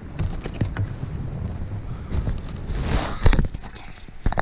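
Close handling of a metal snap clip on a trap's wire: scattered sharp clicks and knocks over rustling and wind noise on the microphone, with the loudest knock just after three seconds in.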